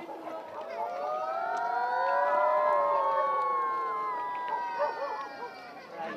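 Several children hidden in the dark howling long, overlapping ghost 'uuuh' sounds, each voice sliding slowly up and down in pitch. The howls swell to their loudest in the middle, then waver and tail off near the end.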